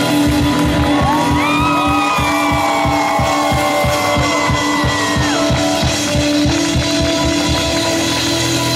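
Live band playing a song's ending: acoustic guitars and keyboard hold a chord while the drums hit rapidly and steadily, the hits coming closer together. High sliding tones rise and fall over it for a few seconds.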